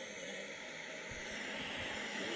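Steady hiss and background noise of an audio recording played back from a laptop into a microphone, with a few low bumps past the midpoint.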